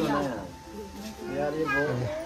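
Women's voices talking and laughing, with a high-pitched, bending voice-like call near the end.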